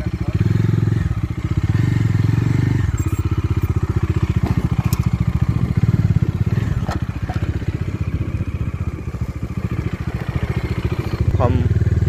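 Bajaj Dominar motorcycle's single-cylinder engine running at low speed over a rough dirt track, fuller for the first few seconds and then easing off. A few sharp knocks and rattles come through along the way.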